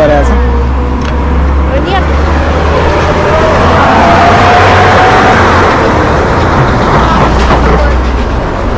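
Road traffic: a vehicle passes close by, its noise swelling to a peak about four to five seconds in, with a slowly rising engine tone, over a steady low traffic rumble.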